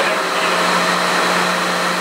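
Steady mechanical whir of boiler-room machinery, with a constant low hum under it.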